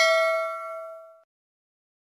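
Notification-bell sound effect ringing out, a bright ding of several clear tones that fades away and is gone a little over a second in.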